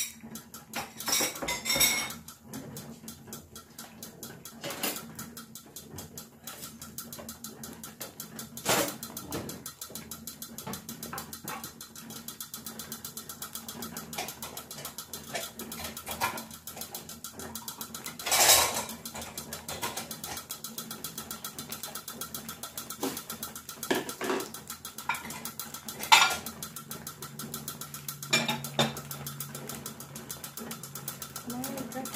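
An egg omelette frying in oil in a non-stick pan on a gas hob, with eggs boiling in a saucepan beside it, giving a steady fast crackle. A few sharp knocks and clatters break in now and then, the loudest late on.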